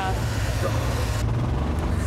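Steady low rumble of a golf buggy rolling along a gravel track, with a hiss that cuts off suddenly a little over a second in.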